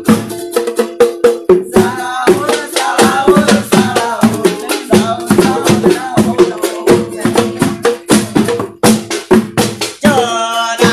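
Street percussion band on a sahur patrol: drums and other hand percussion beaten in a rapid rhythm, with voices singing along. It is music meant to wake residents for the pre-dawn Ramadan meal.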